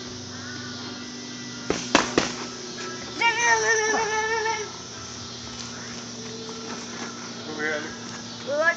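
Boxing gloves landing twice in quick succession about two seconds in, two sharp slaps. A drawn-out voice follows about a second later, over a steady low hum.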